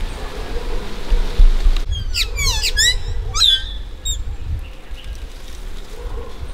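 Carib grackle calling: a quick run of sharp, sweeping high notes about two seconds in, then a couple of shorter hooked notes, over a low rumble.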